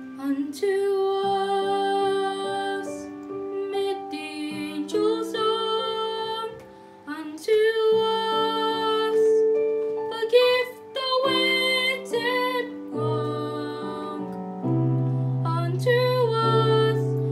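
Three young boys singing a sacred song with piano accompaniment, their unbroken voices holding long notes over the piano.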